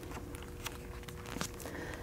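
Faint paper rustle and a few light ticks as a page of a hardcover picture book is turned, over quiet room tone with a faint steady hum.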